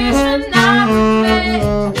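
Music: a woman singing a soul song with a saxophone over a backing track with bass and guitar.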